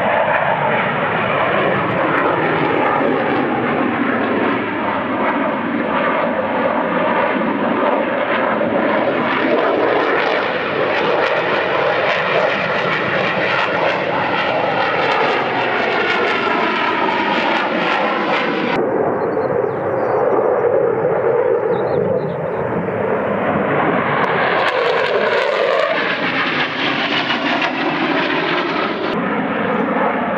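F-16 fighter's jet engine running loud at display power, a continuous roar whose whining tones slide up and down in pitch as the jet climbs and turns.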